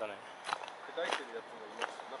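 A person's voice speaking in short phrases over a steady background hiss.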